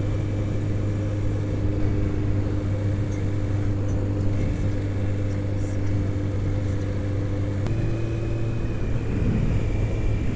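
Honda CBR600 inline-four engine running steadily at cruising speed, heard from the rider's helmet over a steady rush of noise. Its note steps up slightly about three-quarters of the way through.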